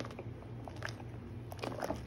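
A spoon stirring thick, simmering champurrado in a stainless steel pot, making short scraping and squelching strokes against the pot, several in quick succession near the end. A steady low hum runs underneath.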